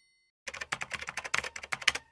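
Computer keyboard typing sound effect: a rapid run of keystroke clicks that starts about half a second in and stops at the end.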